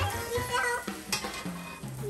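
French toast sizzling on a hot griddle pan, with a metal spatula scraping against the pan. Background music plays underneath.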